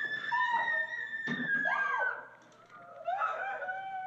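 A woman's high-pitched scream held steady for about two seconds, with a shorter rising-and-falling cry in the middle of it. After a brief lull, lower moaning and crying voices follow near the end.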